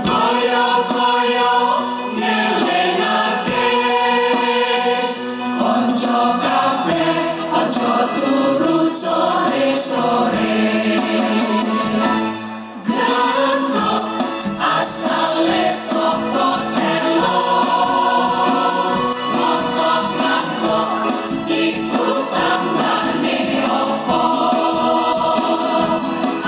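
Women's choir singing together into stage microphones, with a brief break in the singing about twelve seconds in.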